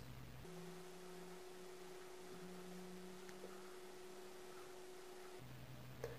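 Near silence with a faint steady hum, a low tone with a second, higher tone above it.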